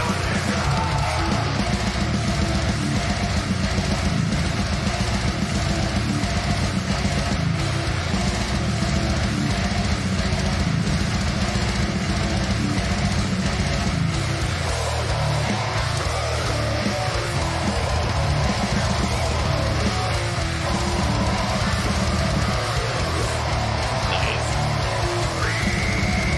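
Brutal death metal song: heavily distorted guitars and bass over very fast, dense drumming.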